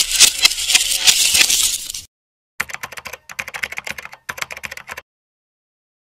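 Keyboard-typing sound effect accompanying on-screen text: a dense run of rapid clicks for about two seconds, a brief pause, then softer clicking in three short runs that stops about a second before the end.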